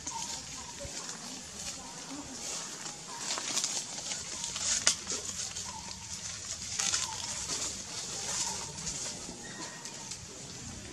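Outdoor forest ambience: a high, pulsing buzz that swells a few times, with short chirps repeating about once a second and scattered light clicks.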